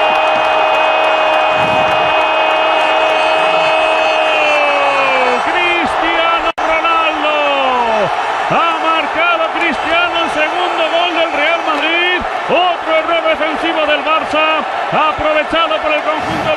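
A television commentator's long, held goal cry over a roaring stadium crowd. The cry holds one high note for about five seconds, then slides down and breaks into a run of short, excited shouts.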